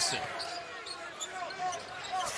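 Basketball being dribbled on a hardwood court, with short sneaker squeaks over the arena's background noise.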